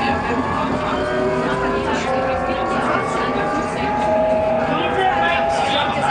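Tram running along its track, heard from inside the rear car: a steady rumble with several whining tones that slowly glide up and down in pitch.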